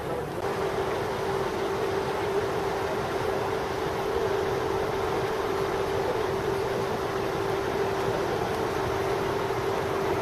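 A steady hum at one even pitch over a continuous wash of background noise.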